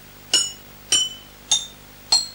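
Row of green glass bottles tuned with different amounts of water, struck one after another: three bright clinking notes about half a second apart, each ringing briefly and each a little higher than the last.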